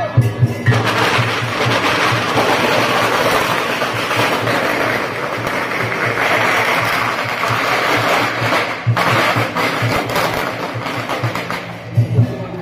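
A string of firecrackers crackling densely and continuously for about eight seconds, starting just under a second in and dying away near the end, over the steady beat of a procession drum.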